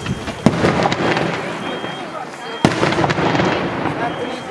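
Daytime aerial firework shells bursting overhead: two sharp bangs about two seconds apart, each followed by an echoing tail.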